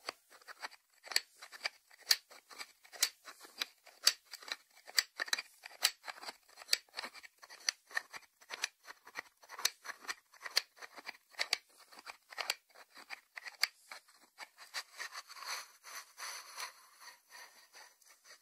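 Fingers tapping on the lid and side of a white ceramic salt dish: a steady run of light, sharp clicks with a faint high ring, about two or three a second. Near the end the taps thin out into a softer scratchy rubbing on the ceramic.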